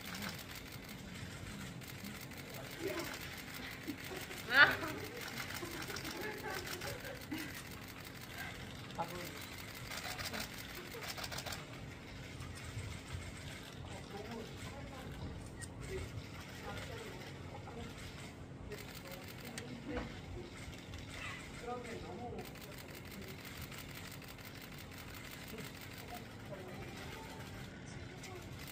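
Faint, indistinct voices murmuring in a hall, with one brief, louder high-pitched vocal exclamation about four and a half seconds in, over a steady low hum.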